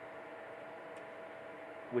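Steady whir of a 3D printer's cooling fans as it heats up: an even hiss with one faint steady tone. A man's voice starts at the very end.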